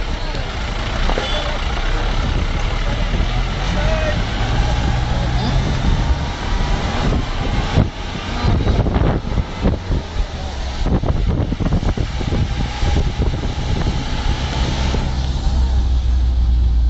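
Engine and road noise from inside a moving vehicle, a steady low rumble, with people talking over it.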